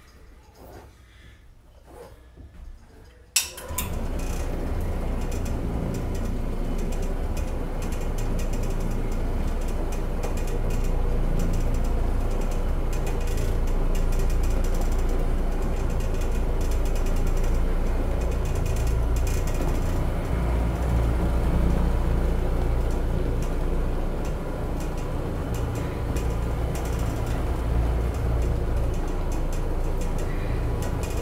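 Challenger OP orbital floor machine starting with a sharp click about three seconds in, then running steadily as it orbits a microfiber bonnet pad over carpet.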